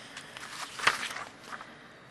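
A few soft knocks and shuffles, with one sharper knock a little under a second in: handling noise between speakers.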